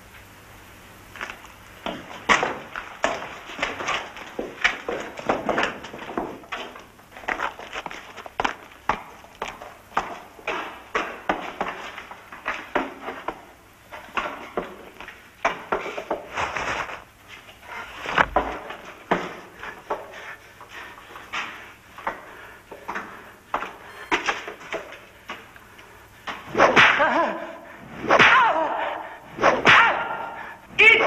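A prisoner being beaten in a torture scene: repeated sharp strikes at uneven spacing, several a second, growing louder and denser near the end.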